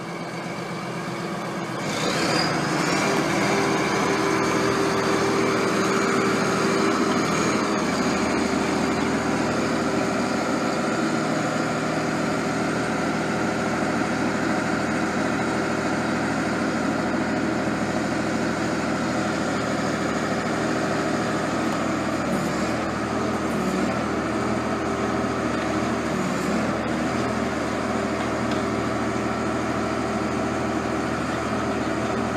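Ingersoll-Rand LME500C drill rig with its drifter, the rock drill on the mast, run up about two seconds in: the machine noise steps up and then runs steadily.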